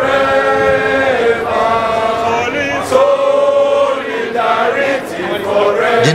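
A crowd of workers singing a rallying chant together in unison, in held phrases that break about every second and a half.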